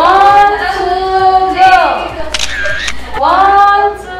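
A singing voice holding long, drawn-out notes that slide down at their ends, one phrase of about two seconds and a shorter one near the end, with a sharp click in the gap between them.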